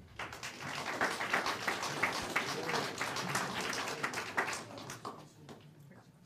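A small audience clapping: a short round of applause that dies away about five seconds in.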